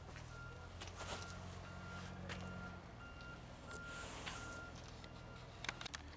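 Faint outdoor machinery sound: a vehicle engine running at a distance and a reversing alarm beeping steadily, a little under twice a second. Light footsteps on dirt and gravel come through now and then.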